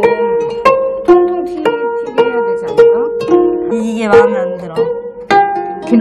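Gayageum, the Korean plucked zither, playing a slow melody: single plucked notes, about two a second, each left to ring.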